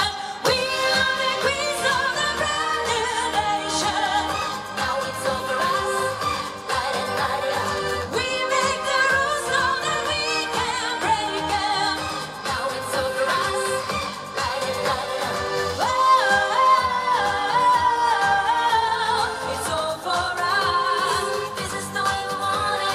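Live pop song over a PA: a woman singing with a pop backing track, her voice sliding and bending in pitch with no clear words.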